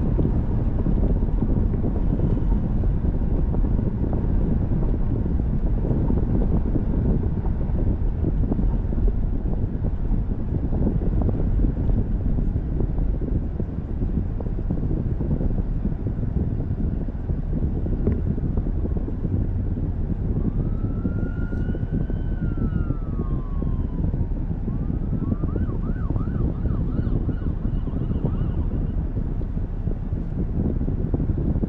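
Steady low road and wind rumble inside a car. About two-thirds of the way in, a distant emergency siren joins it with one slow rising-and-falling wail, then switches to a fast yelp.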